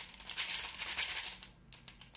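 Fired .338 Lapua Magnum brass cases rattling and clinking together in a plastic basket as it is lifted out of an ultrasonic cleaner. The dense jingling clatter lasts about a second and a half, then thins to a few scattered clinks.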